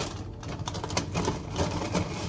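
Paper rustling with small, irregular clicks and knocks as a paper bag and items are handled on a counter.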